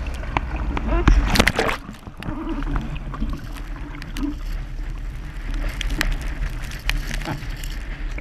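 Water splashing and sloshing against a windsurf sail and board floating on the water while the sailor treads water beside the rig, with a heavy burst of splashing about one to two seconds in. Wind buffets the GoPro microphone as a steady low rumble underneath.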